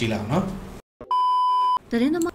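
A man talking, then after a brief gap a steady high electronic beep of under a second, the standard censor bleep laid over a word. Speech resumes right after it.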